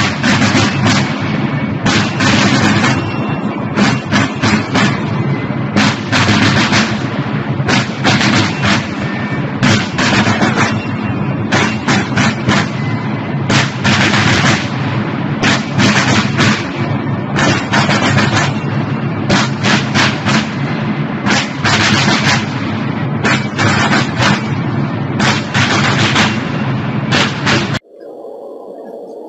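A corps of military field drums playing a rapid march beat, loud and strongly echoing under a large stone dome.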